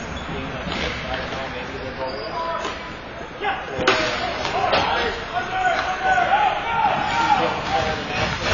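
Ball hockey play: stick and ball knocks on the plastic tile floor, a sharp crack about three and a half seconds in, then players and spectators shouting and cheering, as after a goal.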